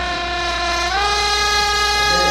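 Trumpets of a live cumbia band holding a long, sustained chord with no drums underneath; the chord steps up in pitch about a second in.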